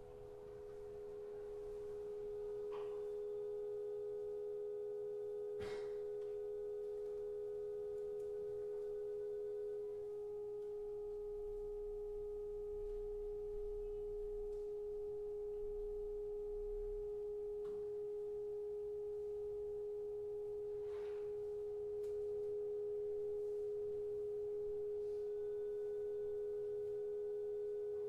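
Contemporary chamber-ensemble music: two steady, pure held tones close in pitch. The higher one drops out about ten seconds in while the lower one holds on, with a few faint taps scattered over it.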